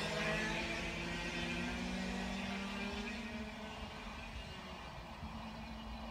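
A 100cc two-stroke racing kart engine held at high revs on the track. Its steady note rises slightly over the first couple of seconds, then fades as the kart pulls away.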